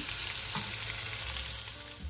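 Chicken and bacon sizzling in an electric skillet as they are stirred and warmed, a steady frying hiss that slowly fades away.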